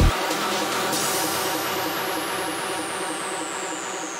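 Psytrance track going into a breakdown: the kick drum and bassline cut out, leaving a busy synth texture with a high sweep that falls slowly in pitch from about a second in.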